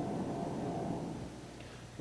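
Low, even rumble of a jet airliner's engines in flight, fading away over the two seconds.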